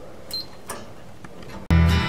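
Lift call button being pressed: a click with a short high beep about a third of a second in, then another light click, over faint room tone. Country guitar music cuts back in loudly near the end.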